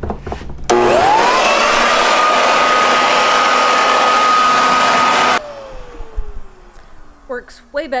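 Corded electric leaf blower switched on about a second in, its motor whine climbing quickly to a steady high pitch under a loud rush of air. After about four and a half seconds it is switched off: the rush of air cuts out at once and the whine falls away as the motor winds down.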